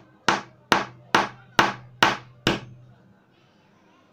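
Pliers striking the ceramic body of an HRC cartridge fuse in a run of sharp blows, about two a second, cracking the ceramic open; the blows stop about two and a half seconds in.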